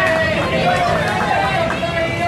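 Several people talking at once, overlapping voices with no single clear speaker.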